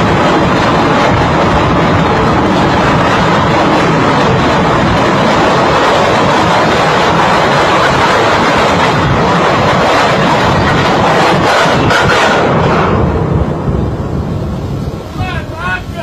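A ship's anchor chain running away out through the windlass and hawse pipe, a loud continuous rattling clatter of the links: the chain has got loose during anchoring. The noise drops off about thirteen seconds in.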